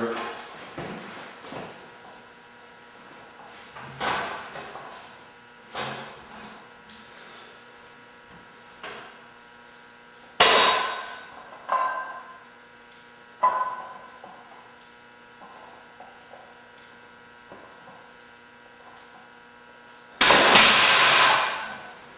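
Barbell loaded with 45 lb plates knocking against the bench rack during a set of bench presses: a run of sharp metallic clanks with brief ringing, the loudest about halfway through. Near the end a loud hissing burst lasts about a second and a half.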